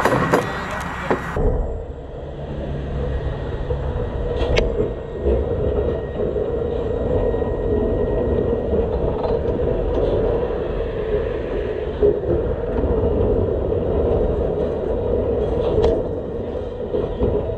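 Oshawa Railways steeple-cab electric locomotive No. 18 rolling slowly along the track, heard from on board: a steady mid-pitched hum over a low rumble. It opens with a second or so of sharper clatter.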